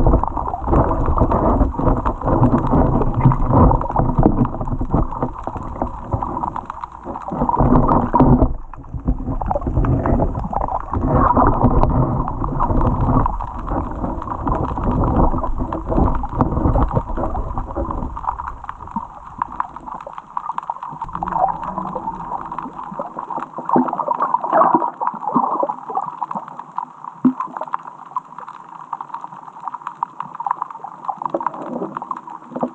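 Muffled underwater noise picked up by a submerged camera: a dense low rumble of water movement with faint knocks and a low hum. The deepest part of the rumble drops away about two-thirds of the way through.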